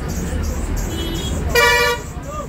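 Steady low vehicle engine rumble in busy street traffic, with a short, loud vehicle horn toot near the end.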